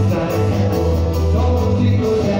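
Live band music with singing: a worship song with heavy held bass notes, guitar and a steady beat.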